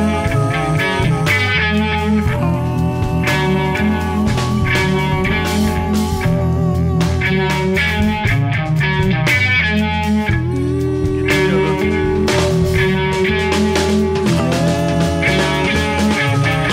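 Instrumental blues-rock passage from a trio: electric guitar over bass guitar and drums, with no vocals. The guitar holds two long sustained notes, one early on and one in the second half.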